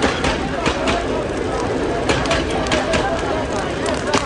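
Several voices talking and calling out over a steady noisy background with frequent short clicks and knocks.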